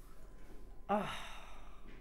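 A woman's soft 'oh' about a second in, trailing into a breathy sigh of admiration.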